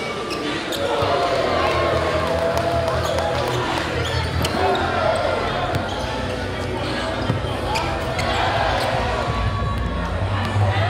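Basketball dribbled on a hardwood gym court during a game, under a steady backdrop of voices from players and spectators.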